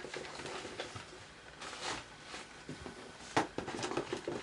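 Fabric rustling and light handling noises as a finished ascot tie is turned over in the hands, with a longer rustle about two seconds in and a sharp tap near the end.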